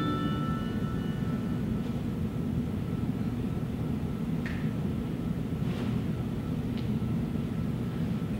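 The last notes of a guitar-accompanied song ring out and fade, leaving a steady low rumble of room noise in a church sanctuary. A few faint footsteps are heard as a man walks up to the pulpit.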